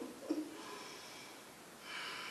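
A woman's short breathy laugh, then faint breathing with a breath in near the end.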